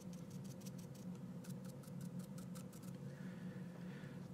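Faint, quick ticks and scratches of a small paintbrush dabbing paint on a palette and miniature, thinning out after the first couple of seconds, over a steady low hum.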